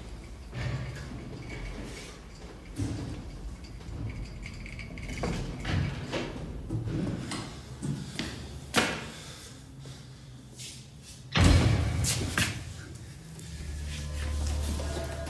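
Scattered knocks and thuds of movement at a door, then a heavy door banging shut about eleven seconds in, the loudest sound.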